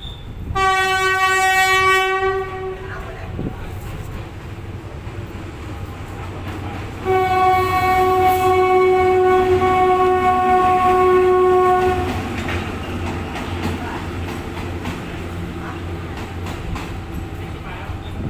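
Train horn sounding two steady blasts, a short one of about two seconds and then a longer one of about five seconds, over a low rumble. Scattered clicks follow near the end.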